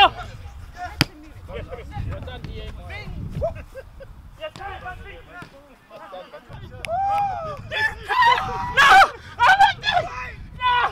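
Footballers' voices calling and talking across a training pitch, getting louder and more shouted near the end, with one sharp kick of a football about a second in.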